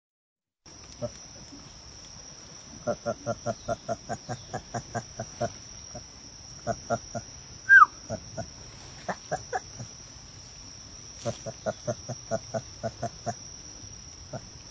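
White-cheeked gibbon making soft mumbling calls: runs of short, quick notes, about three or four a second, in several bursts, with one louder squeak falling in pitch about eight seconds in. A steady high insect drone runs underneath.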